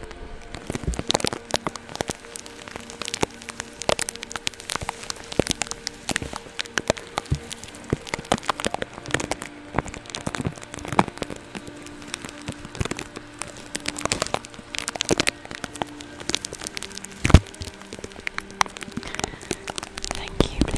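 Makeup brush stroked and tapped against a tape-covered microphone, giving a dense, irregular close-up crackling and scratching, with one sharp, louder pop near the end.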